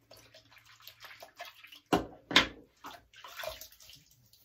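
Water splashing in a bathroom sink as a safety razor is rinsed, with two louder splashes about two seconds in.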